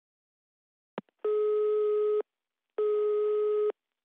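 Telephone call tone: a click, then two steady beeps of about a second each, half a second apart, as the call comes in just before it is answered.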